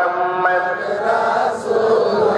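A crowd of men's voices chanting together, loud and continuous, with long held notes that step up and down in pitch.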